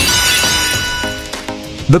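A sudden crashing, glass-like sound effect at the moment the quiz countdown runs out, fading away over about a second, over light background music.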